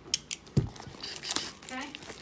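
A few sharp clicks and a knock, then a short scratchy rustle about a second in: hands handling and opening a box of trading cards and its packaging.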